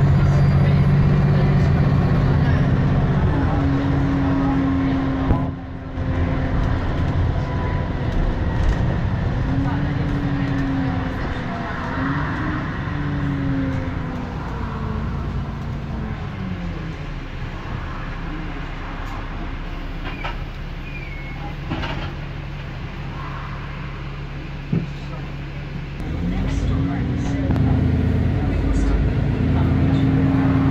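Dennis E40D double-decker bus heard from the upper deck, its engine and drivetrain running while under way. Its whine glides up and down in pitch as the bus changes speed. It is louder at first, quieter through the middle, and builds again near the end as the bus pulls away harder.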